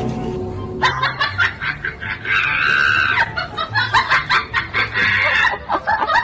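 Background music with a repeating bass line, overlaid with rapid, high-pitched laughter that keeps going from about a second in.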